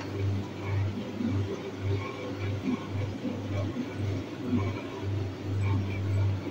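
A low hum that pulses evenly about twice a second, with faint indistinct room noise underneath.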